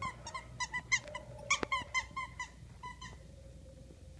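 A small dog chewing a squeaky toy: quick, regular high squeaks, about four or five a second, that stop about three seconds in, with a couple of sharp clicks among them.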